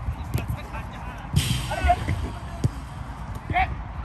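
Players shouting and calling out during a five-a-side football game on an artificial pitch, with several sharp thuds of the ball being kicked. The loudest call comes about a second and a half in.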